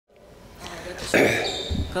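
News-channel logo intro sound effect: a swell that builds over the first second and ends in a sudden loud hit, followed by a low thud just before a voice begins.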